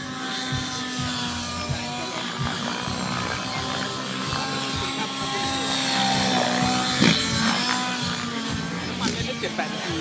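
Nitro-engined RC helicopter's engine and rotor buzzing under hard 3D manoeuvring, louder around six seconds in as it flies low, with a sharp knock about a second later. Music plays over loudspeakers throughout.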